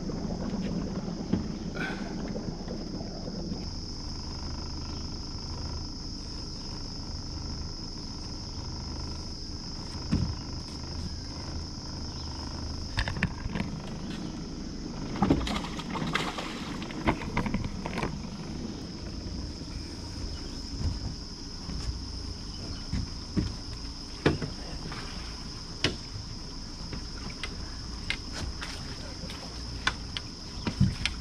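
A steady high-pitched insect chorus runs over a low rumble from the boat. From about halfway in come scattered knocks and splashes, thickest around the middle, as a catfish is netted from the water beside the aluminium boat.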